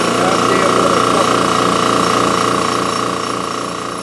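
Lawn tractor's engine running with a steady, rapid beat and a high steady whine, slowly growing quieter.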